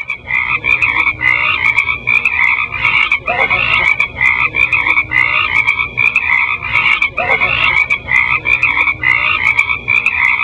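A dense, continuous chorus of pulsing, croak-like animal calls, repeating about two to three times a second, with the loudest part high-pitched.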